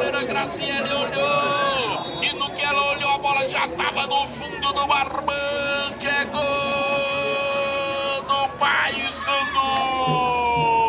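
Supporters singing and chanting close by in celebration of a goal, with long held notes and slow falling phrases.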